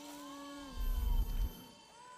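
TV episode soundtrack: a held low humming note fades out, then a deep rumble swells about halfway through and dies away under a second later.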